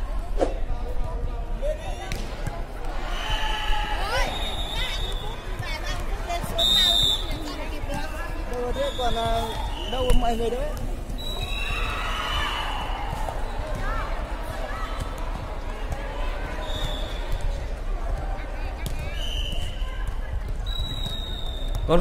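Air volleyball rally in a gym hall: the light ball being struck, players calling out to each other, and short high squeaks scattered through, the loudest hit about halfway through.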